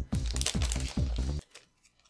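Foil booster-pack wrapper crinkling and crackling as it is torn open and the cards are pulled out, with music underneath. The sound cuts off abruptly about one and a half seconds in.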